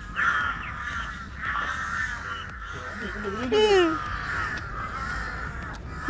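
Many crows calling overhead in a dense, overlapping chorus, with one louder call a little past halfway.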